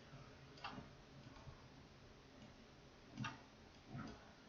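Near silence with two faint, short clicks, about half a second in and again past three seconds in, typical of a computer mouse being clicked.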